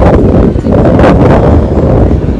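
Wind buffeting a phone's microphone: a loud, steady, low rumble.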